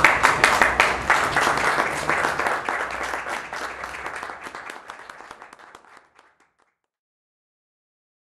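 Audience applauding at the end of a lecture: many hand claps, loudest at the start, that die away and stop about six seconds in.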